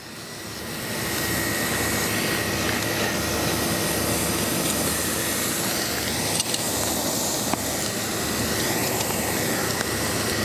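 Marinated skirt steak sizzling as it sears on the hot grate of a charcoal kettle grill, a steady hiss that builds over the first second.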